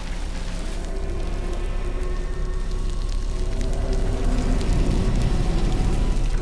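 Film-score tones held and slowly swelling, over a crackling sound effect with scattered clicks, as of vines growing and twisting.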